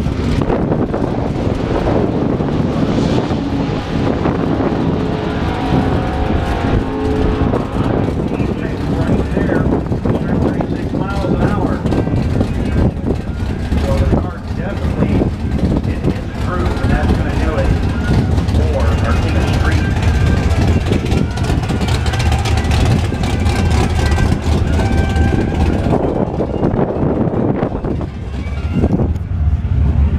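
Drag-racing car engine idling with a steady low rumble in the staging lanes, with people talking nearby.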